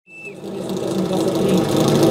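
Portable fire pump's engine idling steadily with a fast, even rattle, fading in as the sound begins.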